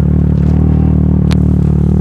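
Side-by-side (SSV) rally car's engine idling steadily, with one sharp click about a second and a half in.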